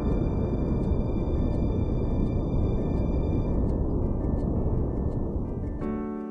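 Ambient background music over a dense, steady low roar that fades away near the end, where clear piano-like notes come in.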